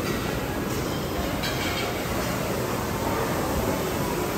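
Steady background din of a busy buffet restaurant, an even, unbroken noise with no clear voices.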